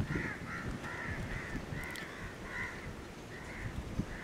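Crows cawing, a string of short caws about two a second with a brief pause near three seconds in, over a low wind rumble.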